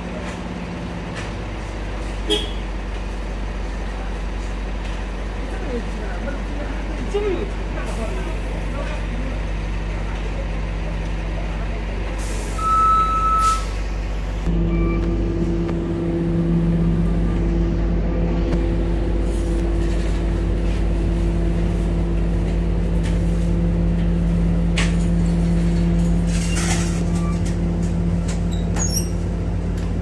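City buses, among them an Orion VII hybrid-electric bus, running at the curb with a steady low engine rumble. About thirteen seconds in comes a short loud hiss of air with a brief beep, and from then on a louder steady engine hum as the bus moves off.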